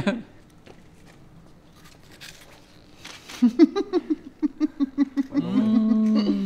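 Quiet for about three seconds, then a person laughing in a quick run of short, pitched 'ha' sounds. This is followed by one long voiced sound that slowly falls in pitch.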